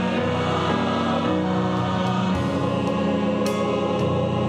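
Church choir singing a slow gospel hymn in long held chords, accompanied by pipe organ and grand piano.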